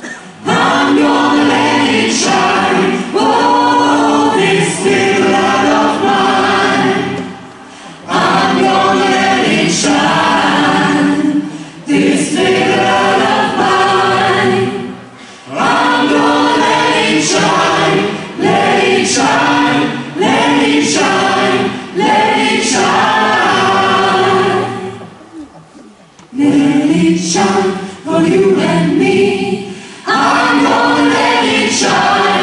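A group of voices singing together as a chorus, in phrases of several seconds with short breaks between them; the longest break comes about 25 seconds in.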